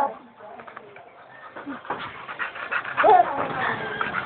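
A dog panting quickly close to the microphone, starting about halfway through after a short lull.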